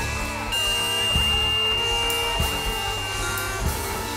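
Live instrumental music from a trio: marimba, bowed cello and drum kit playing together, with a low drum beat about every 1.2 s.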